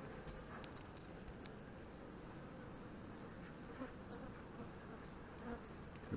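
Honey bees buzzing in an open hive box, a faint steady hum with a few small ticks.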